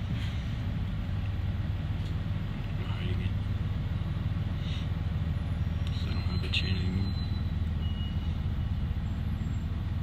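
Steady low hum of a bus's engine and running noise, heard from inside the passenger cabin, with faint voices in the background.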